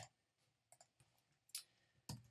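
A few computer mouse clicks against near silence: one sharp click at the start, then fainter clicks about three-quarters of a second in and again about a second and a half in.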